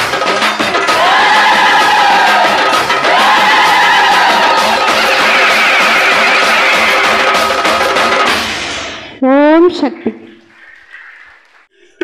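Live Indian devotional song: a woman singing with tabla, tambourine and electronic keyboard, the music ending about eight seconds in. About a second later comes a brief loud sound rising sharply in pitch, then a quiet gap.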